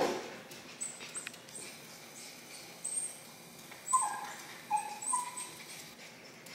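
Small Lhasa Apso dog whimpering in short, high-pitched whines, with several close together around four to five seconds in. It is crying at the foot of the stairs, reluctant to climb them.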